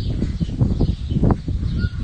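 Phone-microphone rumble and rubbing from the phone being moved against a wicker chair, with faint birds chirping in the background.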